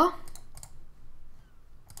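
A few faint, scattered clicks from a computer's input devices, after a spoken word trails off in the first half second.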